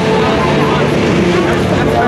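Wooden roller coaster train rumbling along its wooden track, with riders' voices over it.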